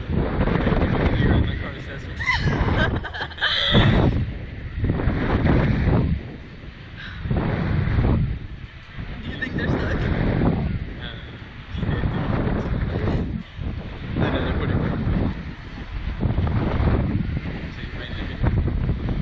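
Wind buffeting the ride-mounted camera's microphone in surges every second or two as the SlingShot capsule swings and bounces on its cords.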